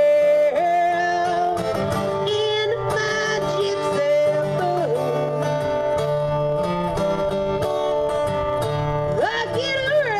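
Live acoustic duo playing a country-style song: acoustic guitar strumming under a lead line of long held notes that slide up and down, with a sharp upward slide near the end.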